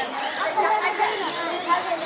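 Several people talking at once: overlapping, indistinct chatter of a group, with no one voice standing out.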